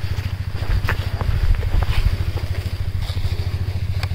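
KTM motorcycle engine idling, a steady rapid low pulsing, with a few light clicks on top.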